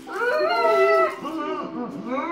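Muffled closed-mouth humming, "mm-hmm"-like sounds from women's voices with teeth-whitening trays held in their mouths, sliding up and down in pitch; loudest in the first second or so, with a shorter hum after.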